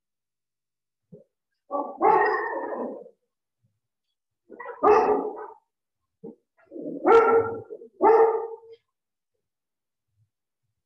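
A dog barking in four bouts, each lasting about a second, with short quiet gaps between them.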